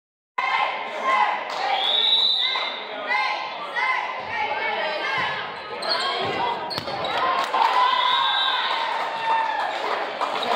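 Volleyball being bumped and set between players on a wooden gym court, with a couple of sharp hits of the ball about six and seven seconds in. Players' voices and calls echo through the large gym.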